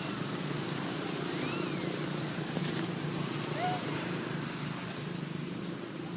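A steady low drone like a running engine, with a few faint high squeaks that rise and fall, from the young monkey.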